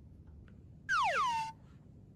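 A comedic cartoon sound effect: a whistle-like tone that slides quickly down in pitch for about half a second, about a second in, then cuts off. It marks the boss shrinking into a child.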